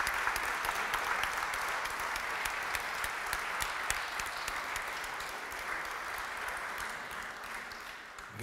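Audience applauding at the end of a talk, slowly dying away toward the end.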